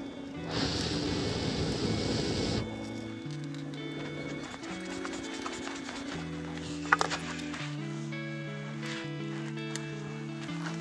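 A loud steady rush of air blown through a fire-blowing pipe into a wood fire for about the first two and a half seconds, then instrumental music with a slow melody. A single sharp snap about seven seconds in.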